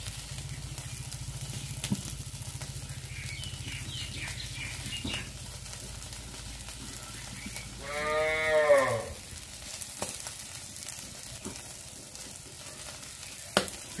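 Chicken pieces sizzling faintly on a wire grill over glowing charcoal, with a steady low hum through the first half. A single drawn-out call about a second long breaks in a little past the middle and is the loudest sound.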